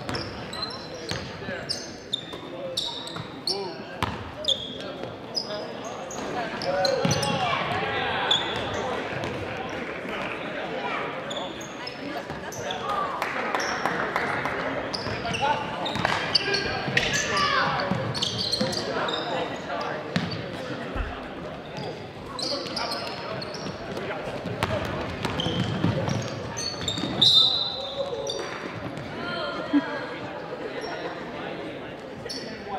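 Live high-school basketball game in a gymnasium: a basketball dribbled on the hardwood floor, short high sneaker squeaks, and indistinct shouting from players and spectators, echoing in the hall. The voices swell louder a few times, briefly peaking near the end.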